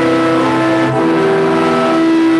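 Organ playing slow held chords, the chord changing about once a second.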